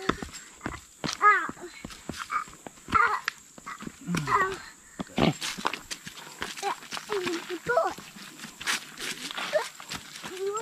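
A small child's short, high-pitched wordless vocal sounds, about four or five of them, over footsteps clicking and scuffing on wooden steps and a leaf-littered dirt trail.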